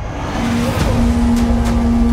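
Trailer score and sound design: a deep rumbling swell that grows louder, with a low sustained note entering about half a second in.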